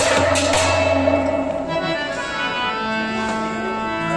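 Harmonium playing held chords in Kashmiri folk music. Percussion strikes sound through roughly the first second, then stop, leaving the harmonium's sustained reed notes.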